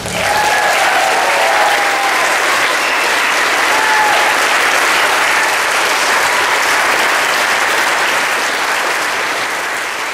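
Audience applauding loudly and steadily after a performance, the clapping slowly fading away near the end.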